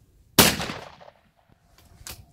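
A single shotgun shot at a clay target about half a second in, its report ringing out and fading over about half a second.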